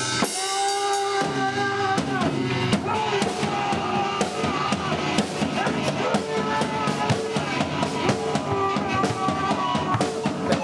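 Amateur rock jam: electric guitars holding sustained notes over a drum kit beating a fast, steady rhythm. The bass end drops out for about the first second before the full band comes in.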